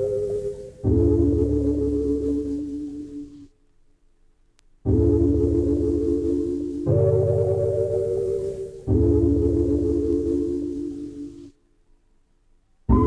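Minimal electronic music: sustained, steady chords over a low pulsing bass, changing every couple of seconds. The music drops out for about a second, about three and a half seconds in, and again near the end.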